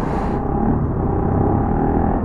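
Bajaj Pulsar NS200 single-cylinder motorcycle engine running at a steady pitch while riding, under a steady rumble of wind and road noise. A brief hiss comes in the first half second.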